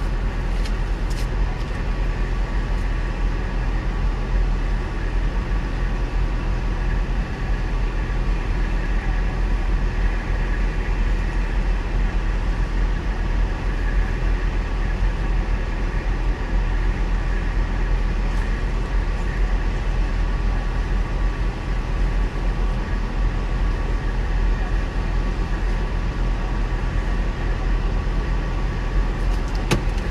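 Car engine idling while parked, heard from inside the cabin as a steady low rumble with a faint constant hum.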